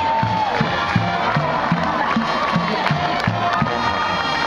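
Stadium crowd cheering over music with a steady drum beat, about two beats a second.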